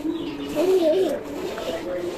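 A dove cooing: low, rounded coo notes, two of them close together about half a second in, over a low steady voice-like tone.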